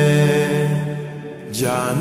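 Slowed-down, reverb-heavy naat singing: a long held note over a humming drone fades away about a second in, then a new sung note slides in near the end.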